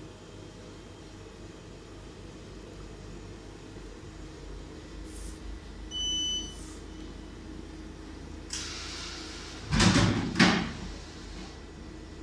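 A vending machine's cashless card reader gives a single short beep about halfway through, accepting a card tapped on it, over a steady low machine hum. Near the end there is a hiss and then two loud mechanical clunks from the vending machine.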